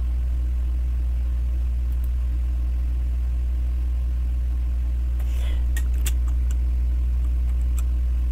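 Steady low electrical hum in the recording, unchanging throughout, with a few faint clicks about five to six seconds in.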